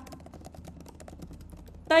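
Computer keyboard being typed on in a quick, even run of key clicks as a line of text is entered.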